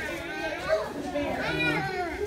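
Children's voices and people chattering, with a high-pitched child's call about one and a half seconds in.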